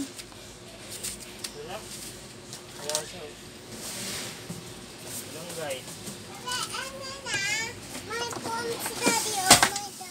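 A toddler babbling and calling out in short high-pitched sounds, over a faint steady hum. A sharp knock near the end is the loudest sound.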